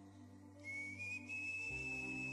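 Soft background music of sustained chords, with a high whistle-like melody line coming in about half a second in and a new bass note near the end.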